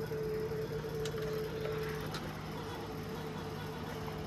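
DVD player loading a disc: a few faint clicks from the tray and mechanism over a steady hum and tone, the tone fading out a little over two seconds in.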